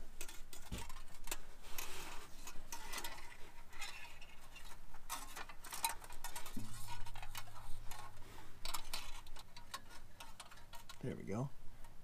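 Irregular light metallic clicks and scrapes as a fish wire is pushed into a hole in a car's frame rail and rattles along inside the steel. A low steady hum runs for a few seconds past the middle.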